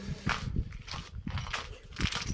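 Footsteps on a bare, gritty concrete floor: a run of irregular scuffs and taps.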